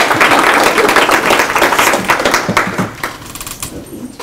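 Audience applauding, a dense clatter of many hands clapping that thins out and fades away in the last second.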